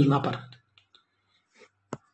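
A man's voice trails off at the end of a phrase about half a second in. After a pause comes one short, sharp click just before the end.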